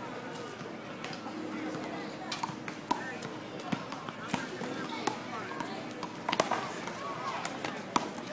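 Indistinct voices of several people talking, with a handful of sharp knocks scattered through it.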